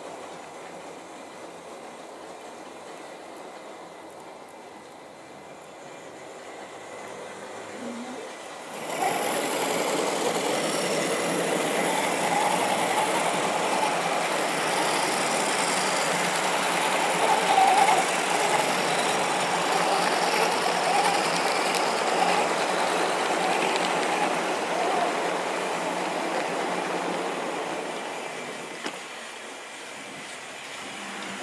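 OO gauge model goods train with a GWR Hall-class steam locomotive model running along the track: its electric motor and wheels on the rails make a steady running noise. It gets sharply louder about nine seconds in and fades near the end.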